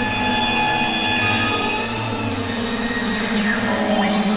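Experimental synthesizer noise: a low steady drone under several high, sustained whistling tones and a hiss of noise, with a few tones gliding downward near the end.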